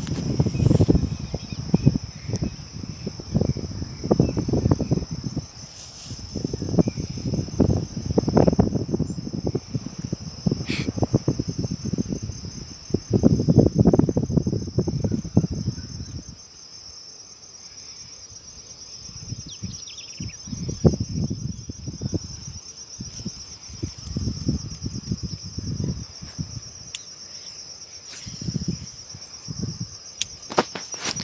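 A steady high-pitched insect chorus, with irregular low rumbling noise on the microphone through most of it that eases off for a few seconds past the middle.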